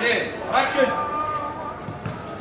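Footballers shouting to each other on the pitch, with one long drawn-out call from about halfway to near the end.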